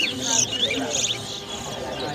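Caged towa-towa seed-finch singing: a run of high, sharp chirped notes with a quick, fine trill about a second in, fading somewhat in the second half.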